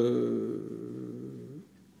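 A man's long, drawn-out hesitation sound, "euh," held on one low pitch and fading out over about a second and a half.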